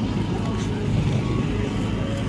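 A steady low engine rumble, like a motor running nearby.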